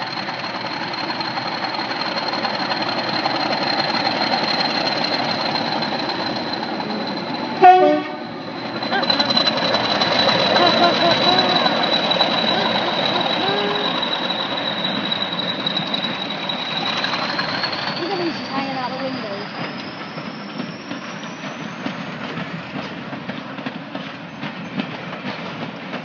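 English Electric Class 40 diesel locomotive D213 pulling out with its train, engine running with a steady high turbocharger whistle. The whistle rises in pitch about two-thirds of the way through, and there is one short, very loud blast about eight seconds in.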